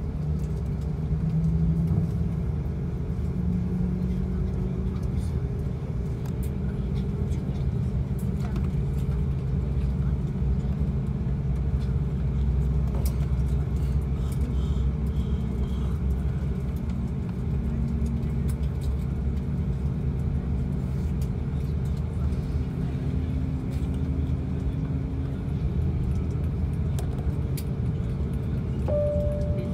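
Steady low rumble and hum heard inside the cabin of an Airbus A340-500 on the ground, from its engines and air systems. A few faint droning tones drift slowly upward in pitch.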